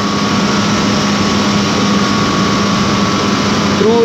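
Steady machine noise of a running hydroelectric turbine-generator unit: a constant low hum and a higher steady whine over a broad rush.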